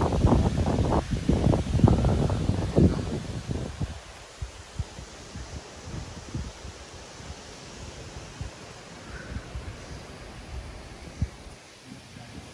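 Wind buffeting the microphone, loudest in the first three seconds, then settling to a quieter breeze with leaves rustling and a few soft low thumps.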